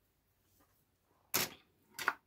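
Near silence broken by a single short, sharp click about two-thirds of the way through, and another at the very end.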